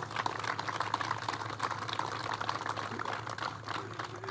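Crowd applauding: a dense, steady patter of many hands clapping.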